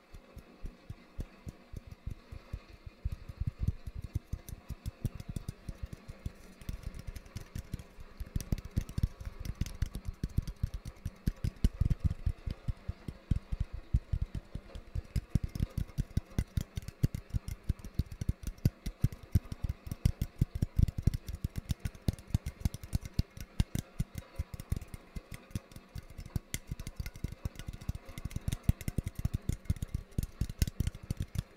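Fingertips and nails tapping rapidly on a small can close to the microphone, in quick irregular flurries of several taps a second, over a faint steady rain sound.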